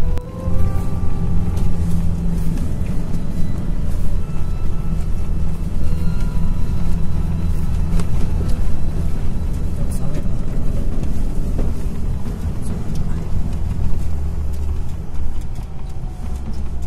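Background music over the in-cabin rumble of a car driving slowly on a rough, muddy dirt road, with scattered clicks and knocks from the bumpy ride.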